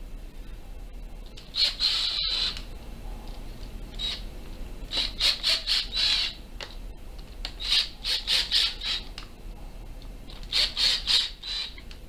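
Cordless drill driving wood screws into a banjo's back plate in four short spurts, each a high, rapidly pulsing squeak as a screw turns into the wood.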